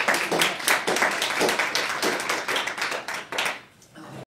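Audience applauding: a dense run of hand claps that dies away near the end.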